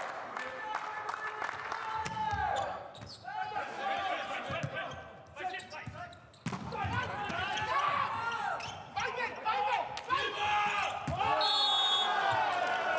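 Indoor volleyball play in a large hall: repeated sharp hits of the ball, mixed with players' shouts and calls.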